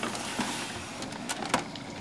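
A desktop computer tower being turned round by hand on a wooden desk: a steady scraping and rubbing of the case against the desk, with a couple of light clicks near the end.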